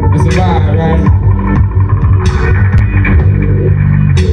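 Loud live band music played through a festival stage's PA and heard from the crowd: a deep electric bass line under electronic backing.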